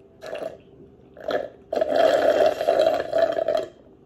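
Slurping through a plastic straw at the bottom of a nearly empty cup, air and the last of the drink gurgling up the straw. There are two short sucks, then one long, loud slurp of about two seconds.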